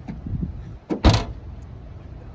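A short, sharp thump about a second in, just after a fainter click, over a low outdoor rumble.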